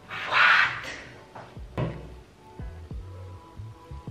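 A short, loud breathy whoosh, then background music with a low thumping beat that comes in about a second and a half in.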